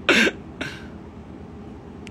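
A man's short breathy vocal burst, a cough-like chuckle, followed by a fainter second one about half a second later, over a low steady room hum.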